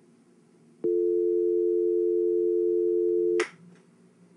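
Telephone dial tone: two steady tones sounding together, starting about a second in and cut off suddenly with a click after about two and a half seconds. It is the dead line heard after the other party hangs up.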